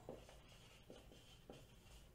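Marker pen writing on a whiteboard: a few faint, short strokes over near silence.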